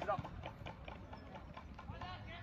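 Faint, high-pitched shouts of youth soccer players across the pitch, with a quick run of light taps throughout.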